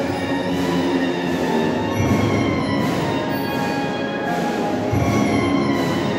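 Procession band playing a slow funeral march: sustained, full brass chords of many notes that shift from one to the next.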